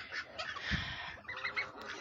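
Domestic duck calling from its nest: a short breathy sound, then a quick run of short notes a little past halfway, with a low knock just before them.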